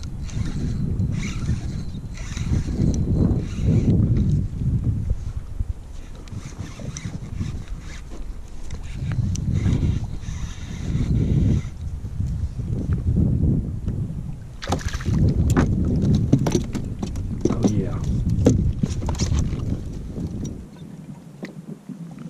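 Wind rumbling on the microphone and water moving against a kayak hull, in slow swells. From about two-thirds of the way in, a run of sharp clicks and knocks as rod, line and tackle are handled.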